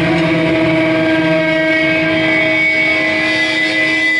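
Distorted electric guitar and amplifier left ringing as a steady, loud drone of held tones and feedback, with no drums playing.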